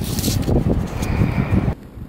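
Wind buffeting the microphone as a loud, rough rumble. It cuts off abruptly near the end, leaving much quieter outdoor background.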